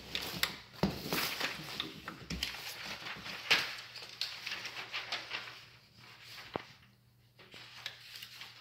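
Cats play-fighting on loose sheets of white packing material: scrabbling and rustling with scattered clicks, the sharpest knock about three and a half seconds in. The noise dies down near the end.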